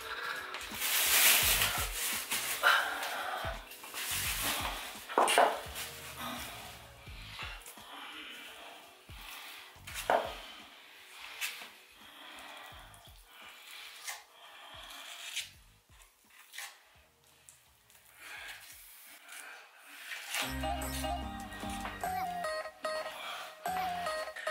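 Irregular scraping strokes of a small metal tool working cement mortar into a gap at the base of a tiled wall, patching a spot where water leaks. Background music plays along with it.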